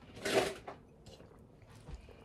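A person sipping juice from a glass: one short, noisy drinking sound near the start, then quiet, with a faint knock near the end.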